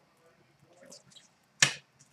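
A single sharp click about one and a half seconds in, as a trading card is set down on a glass display counter, with a few faint ticks of card handling before it.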